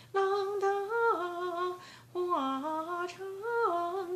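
A woman's unaccompanied voice singing a slow folk melody in two phrases of held notes that step up and down, with a breath between them about two seconds in.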